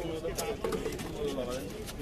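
Faint speech: men talking in a street crowd, heard from a distance under the hum of the street.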